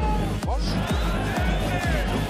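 Background music with a steady, heavy bass beat, with a brief snatch of a voice about half a second in.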